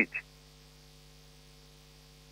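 The tail of a spoken word, then a pause in which only a faint steady electrical mains hum is heard.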